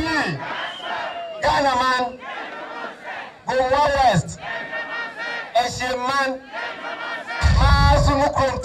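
A man shouts rally slogans through a public-address system in loud bursts about every two seconds, and a crowd shouts back between them in call-and-response. A heavy boom from the loudspeakers comes with the last shout, near the end.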